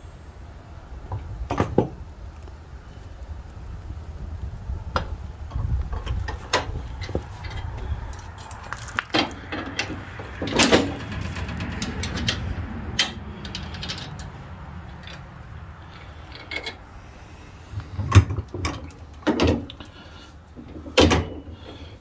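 Irregular metallic clinks and knocks of steel hitch pins, clips, chain and lift arms being handled and fitted on a garden tractor's three-point hitch.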